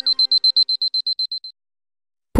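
Electronic beeping at the tail of a TV programme's intro music: a high tone pulsing about ten times a second, fading out and stopping about one and a half seconds in.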